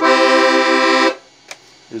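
Beltuna Alpstar piano accordion on its tremolo register: a held chord, its reeds beating in a wavering pulse, cut off about a second in. A brief faint click follows.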